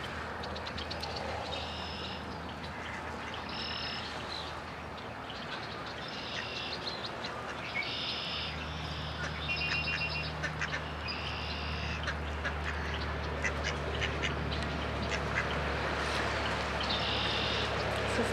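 Mallards quacking in short repeated calls, with sharp clicks of bills pecking birdseed off gravelly ground. A steady low drone joins about eight seconds in.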